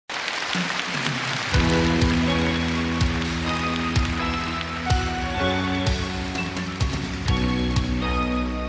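Live band instrumental introduction with piano: sustained chords over a drum beat about once a second, coming in about a second and a half in, after a short stretch of audience applause.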